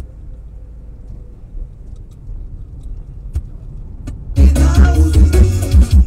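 Music in a car cuts off, leaving the low rumble of the car's cabin with a few faint clicks for about four seconds; then the music starts again loudly with a strong bass beat.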